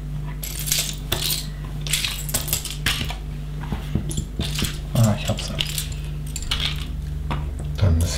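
Small plastic LEGO bricks clicking and rattling against each other as a hand rummages through a pile of loose pieces, searching for a part.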